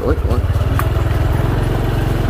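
Small motorbike engine running steadily at low speed, a rapid even firing beat, heard from the bike itself as it rides a rough dirt path.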